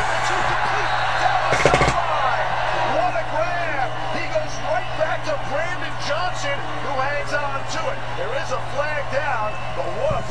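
Football TV broadcast audio: announcers' voices calling the play over a steady low hum from the broadcast.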